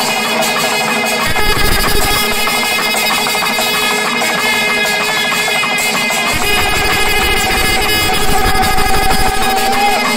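Loud traditional Kerala temple music: drums with wind instruments holding long, steady notes. One held note rises slightly near the end.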